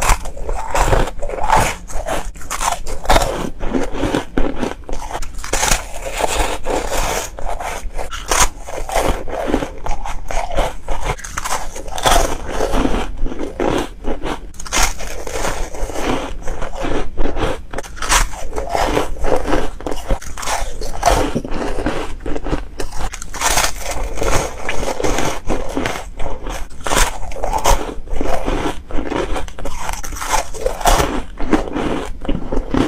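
Foam ice, shaped as frozen bows, being bitten and chewed: one crisp, crackling crunch after another, packed closely together.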